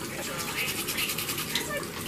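Toothbrush scrubbing teeth in quick, rapid back-and-forth strokes that stop about one and a half seconds in, with a bathroom faucet running into the sink.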